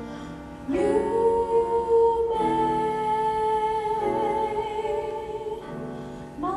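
Mixed choir entering over piano about a second in, singing held chords that shift twice, then breaking off briefly near the end.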